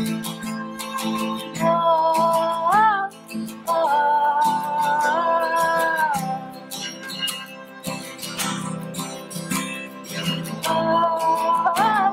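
Live folk band: acoustic guitars strummed in a steady rhythm under a wordless melody of long held notes, each phrase ending in an upward slide.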